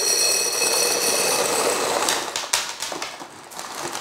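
Dried white beans, used as pie weights, pouring off baking paper into a glass jar: a dense rattle for about two seconds, then a few scattered clicks as the last beans drop in. A thin high ringing runs through the first half.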